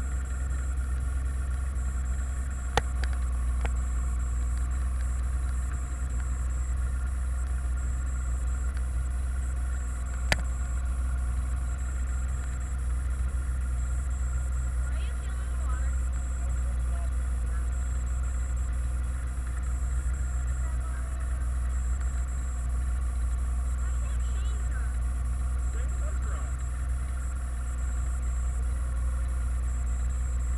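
A boat's engine idling steadily with a low drone, with two sharp knocks, one about three seconds in and one about ten seconds in.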